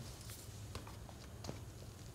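A few faint, short clicks of magnetic player counters being moved and set down on a tactics whiteboard, over low room hum.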